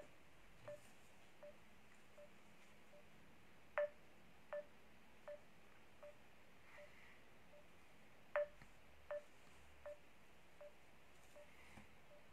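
Faint, regular ticking, about one tick every three-quarters of a second, each with a short pitched ping, a few of the ticks louder than the rest, over a quiet room.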